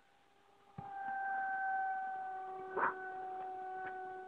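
RC model airplane's motor running in flight: a steady, even-pitched tone that comes in sharply about a second in, then slowly fades with its pitch drifting a little lower. A short knock sounds as the tone begins, and a brief rustle comes just before three seconds.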